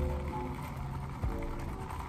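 Ice cubes rattling in a plastic cup as an iced matcha latte is swirled to mix the unmixed matcha, over soft background music.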